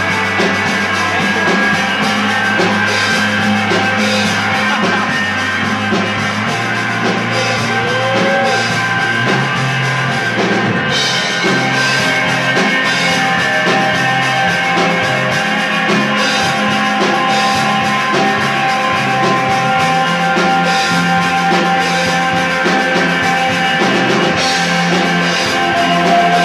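Live rock band playing without singing: a drum kit keeps a steady beat under long, held electric guitar and bass tones.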